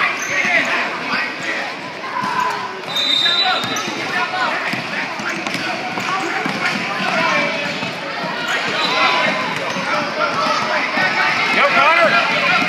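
A basketball bouncing on a hardwood gym floor as it is dribbled up the court, amid many overlapping voices of spectators and players in the gym.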